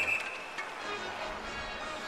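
Ice hockey arena ambience between commentary lines: crowd murmur with music playing faintly, after a short high steady tone right at the start.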